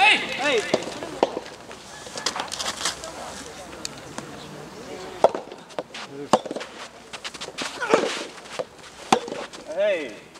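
Soft tennis rackets striking the rubber ball in a rally, a handful of sharp pops a second or more apart, with players' shouts at the start, near 8 s and near the end.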